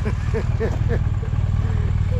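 BMW R1200GS boxer-twin engine idling steadily, a low, even pulse, with faint voices over it.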